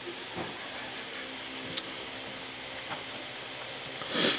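Steady room hiss with a faint low hum, broken by one sharp click a little under two seconds in.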